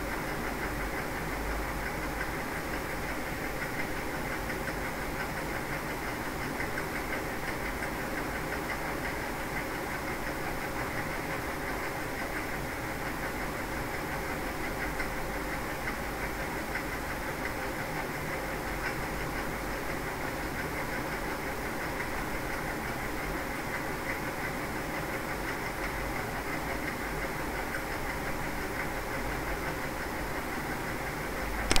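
Steady machine-like background noise: a continuous, even hum and hiss that does not change.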